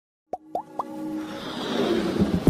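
Logo intro sound effects: three quick plops, each gliding upward in pitch, about a quarter second apart, then a swelling riser that builds in loudness.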